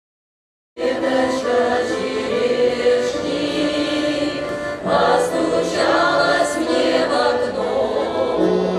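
Russian folk choir singing together in several voices, accompanied by an accordion. The singing starts suddenly just under a second in, after silence.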